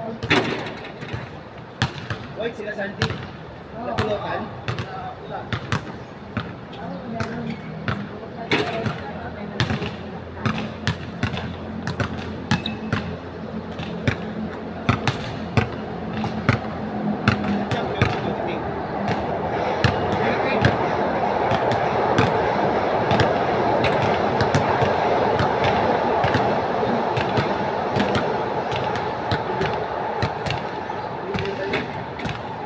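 Basketballs bouncing on a hard outdoor court, many sharp separate thuds through the whole stretch. From about halfway a steady noise builds up and holds under the bounces.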